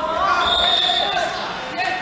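Voices talking in a large, echoing sports hall, with a short high, steady tone about half a second in, such as a shoe squeaking on the wrestling mat, and a few sharp clicks near the end.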